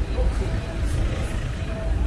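Outdoor street ambience: a steady low rumble with voices and faint music mixed in.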